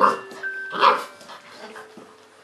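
Saint Bernard puppy giving two short barks, one right at the start and another just under a second later, over light chiming music.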